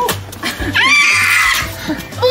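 A young child's high-pitched squeal, rising in pitch and held for about a second, over background music.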